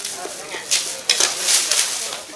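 Paper wrapping being torn and crumpled off a poster by several hands: crackling rustles that come in bursts and are loudest in the second half, over a murmur of voices.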